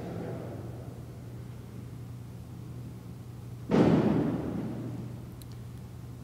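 Quiet room tone with a steady low electrical hum, broken about three and a half seconds in by a single thump that rings out for over a second in the reverberant church.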